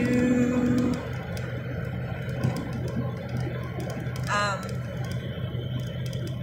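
A woman's held sung note trails off in the first second. After it comes the steady road and engine noise of a moving car heard from inside the cabin, with one short rising tone about four seconds in.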